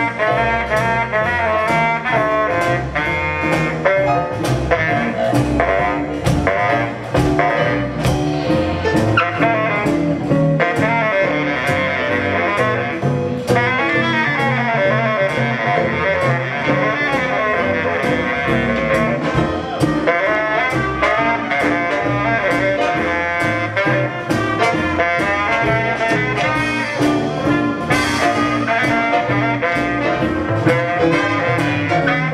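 A live jazz big band playing a saxophone solo over the brass section and rhythm section. The drums keep a steady beat throughout.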